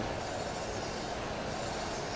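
Crankshaft grinder running: the grinding wheel grinds a turning crankshaft journal down to finish size under coolant flow, a steady, even grinding noise.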